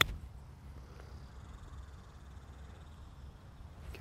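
A 60-degree Callaway Mack Daddy 4 C-grind lob wedge strikes a golf ball off the turf once for a short pitch shot, a single crisp click at the very start. After it there is only a faint, low, steady outdoor rumble.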